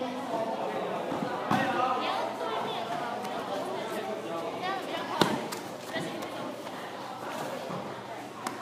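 Teenagers' voices chattering in a large hall, with two sharp thuds of feet and bodies on the floor mats during push-hands sparring, about a second and a half in and about five seconds in, the second one the loudest.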